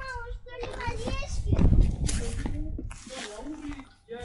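Young children's voices: high-pitched wordless calls and vocalising, with a cough at the start. A loud low rumble comes about a second and a half in.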